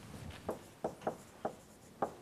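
Marker pen writing on a whiteboard: about four short strokes, faint.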